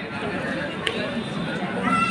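Chatter of many voices from spectators and players at an outdoor match, with a single sharp click a little under a second in.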